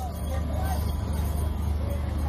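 A steady low rumble with faint background voices, and no distinct event standing out.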